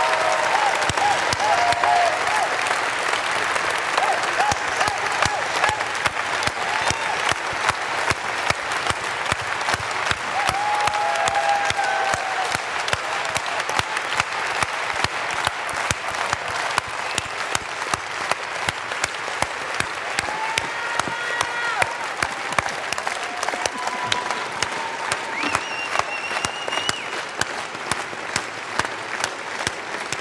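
Large audience applauding steadily and at length, dense clapping with scattered voices calling out from the crowd.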